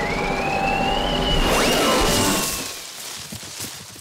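Cartoon sound effect of an electric fan switched on: a rush of wind with a motor whine that rises in pitch as it spins up, holds steady, then dies away about three seconds in.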